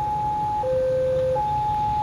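Railway level-crossing warning alarm sounding a steady electronic two-tone signal, swapping between a higher and a lower note about every 0.7 s, the sign that a train is approaching the crossing.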